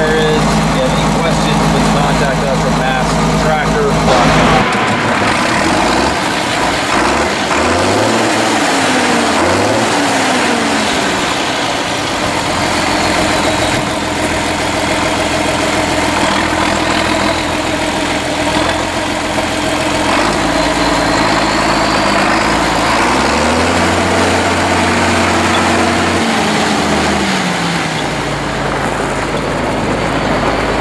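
A 1973 John Deere 4630's six-cylinder turbocharged diesel engine running as the tractor is driven. It runs steady and close, as heard from the cab, for the first few seconds, then is heard from outside, its pitch rising and falling a few times as the engine speed changes.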